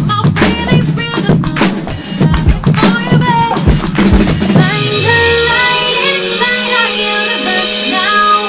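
Acoustic drum kit played in a busy groove of kick, snare and cymbals over the song's recording. A little past halfway the drums stop, and the track carries on alone with held chords.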